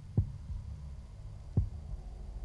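Two short, soft low thumps about a second and a half apart over a steady low hum.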